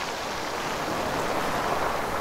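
Steady rushing of wind and lapping surf at a shoreline, swelling gently toward the end.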